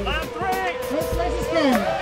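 Background music with a steady beat, over the whine of racing quadcopter motors, several tones rising and falling in pitch together.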